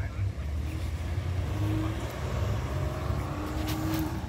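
A car passing: a steady low rumble with a faint engine hum that rises slightly in pitch over the second half.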